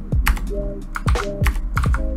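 Computer keyboard keystrokes while code is copied and pasted, over background music with a deep, falling bass thump and sustained chords.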